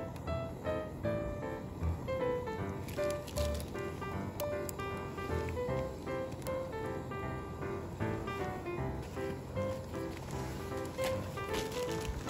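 Background music: a light tune of short, evenly paced notes.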